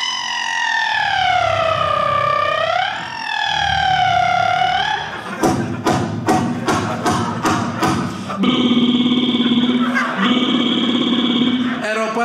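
A man imitating construction noise with his mouth into a microphone: first a long whine that sags and rises in pitch, then a quick run of knocks, then a steady buzz in two stretches broken by a short gap.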